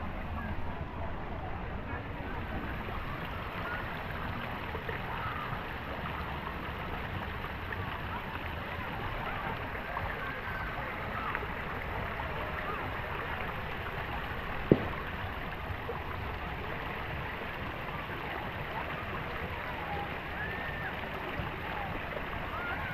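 Water trickling and gurgling among rocks at a pond's edge, with a murmur of distant voices. A single sharp click about fifteen seconds in.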